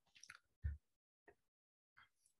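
Near silence with a few faint brief clicks and one short soft low sound about two-thirds of a second in, like small mouth noises near a microphone.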